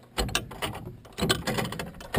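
Magnetic Flagman wig-wag crossing signal mechanism running on power: its electromagnets pull the swing arm from side to side, and the contacts and arm clack and clatter in a rhythm of about one swing a second.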